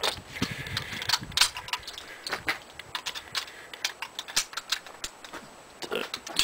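Irregular metallic clicks and rattles of .30-06 cartridges being handled and loaded into the action of a 1903 Springfield rifle.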